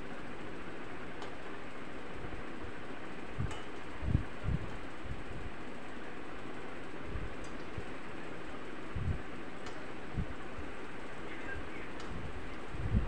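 Egg-filled dough pouches deep-frying in oil in a kadai over a low flame: a steady, even sizzle, with a few soft knocks as the slotted spatula turns them.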